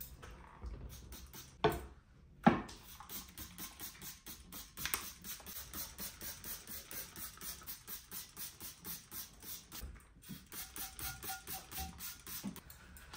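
A trigger spray bottle of universal degreasing cleaner pumped over and over, each squeeze a short hiss of spray, about three a second with a brief pause near the end. Two louder knocks come just before the spraying begins.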